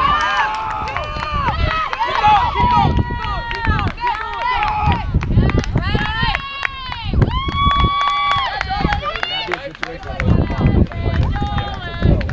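Several women's voices shouting and yelling over one another, many calls high and drawn out, with no clear words; one long held call comes about two-thirds of the way through.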